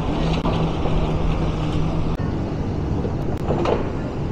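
A heavy diesel engine running steadily with a low hum, over a continuous bed of outdoor noise; the hum drops away about halfway through.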